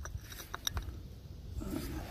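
Light clicks of a Canadian depression-glass teacup touching its glass saucer as they are handled, a few in the first second, over a low rumble.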